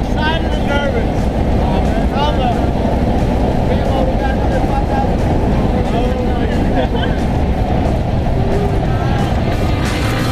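Loud steady rush of engine and wind noise inside the cabin of a small single-engine jump plane in flight, with air blowing in, and voices shouting over it, mostly in the first few seconds.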